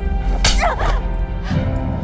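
A sharp, whip-like crack about half a second in, followed by a pained cry, over a low, steady music drone.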